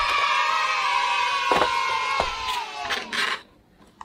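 A group of children cheering in one long held shout lasting about three seconds, dipping slightly in pitch as it ends. A couple of sharp clicks cut through it, and a short rustle follows as it stops.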